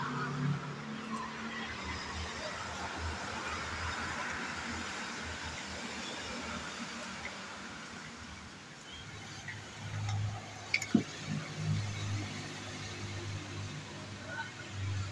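Engine oil pouring from a metal can into a plastic funnel, with a single sharp click about eleven seconds in.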